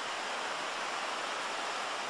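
Ocean surf breaking on the beach, a steady, even rush of waves.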